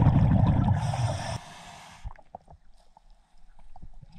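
Scuba diver's exhaled bubbles from the regulator rushing past the underwater camera for about a second and a half, then the underwater sound drops to a much quieter level with faint scattered ticks.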